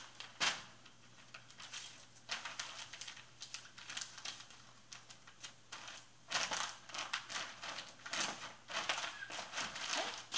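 Plastic poly mailer bag crinkling and rustling as a garment is packed into it and the bag is pressed flat, in irregular bouts that are loudest from about six to nine seconds in.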